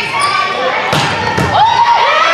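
A volleyball rally in a gym: the ball is struck hard twice, about half a second apart, with players' calls and sneaker squeaks on the hardwood floor.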